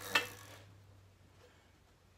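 A single sharp click just after the start, followed by a short rattle that fades within about half a second, from the electric scooter's rear wheel and drive chain being turned by hand to check the chain tension. After that there is only a faint low hum.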